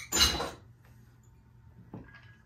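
Crushed ice tipped out of a chilled stemmed cocktail glass, a short rattling rush of ice lasting about half a second, followed by a small click near the end.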